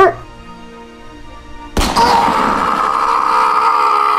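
Cartoon sound effects over background music: a sudden bang about two seconds in, followed by a loud, harsh, steady sound held for about three seconds.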